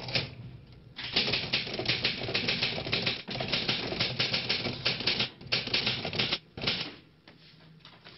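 Rapid, irregular clicking in dense runs, from about a second in to about six seconds, with a short break in the middle and another brief burst near the end.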